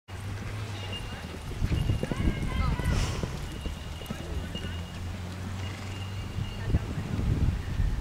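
Hoofbeats of a ridden horse galloping on a dirt arena, loudest in two spells, around two to three seconds in and again near the end.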